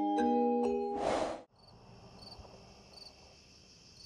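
Intro music of struck mallet-like notes ends about a second in with a short whoosh of hiss. Then faint crickets chirp, a soft pulse repeating about twice a second over a steady high ringing.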